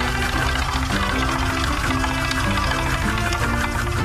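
Slot-game soundtrack music playing through the bonus-wheel feature: a melody of stepping held notes over a steady low backing.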